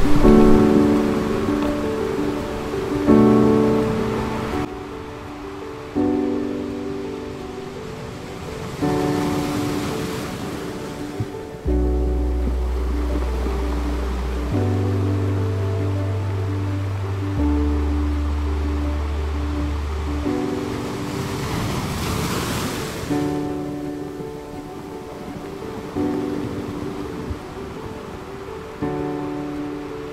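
Background music: sustained chords that change every few seconds, with deep bass notes coming in about halfway through. Surf rises and falls beneath it, swelling twice.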